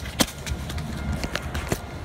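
Handling noise from a phone camera being turned around: a low rumble with a few sharp clicks and knocks, the loudest just after the start.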